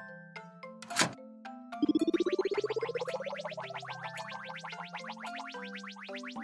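A click about a second in, then a loud buzzing whir that rises steadily in pitch over about two seconds: a cartoon machine starting up as its red button is pressed. Light background music with bell-like mallet notes plays underneath.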